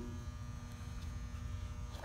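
Steady electrical buzz, a hum of several constant tones over a low rumble of room noise, with no speech.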